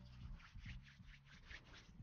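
Hands rubbing matte clay pomade between the palms, making faint, quick, even rubbing strokes, about six a second.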